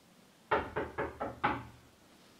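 Knocking on a door: five quick raps in about a second.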